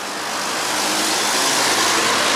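Road traffic passing close by: a large flatbed truck driving past, its engine and tyre noise steadily growing louder.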